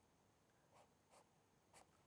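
Near silence with three faint, short scratches of a marker pen drawing strokes on paper.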